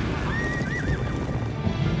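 A horse whinnies once, a wavering call in the first second, over background music, with running horses' hoofbeats beneath.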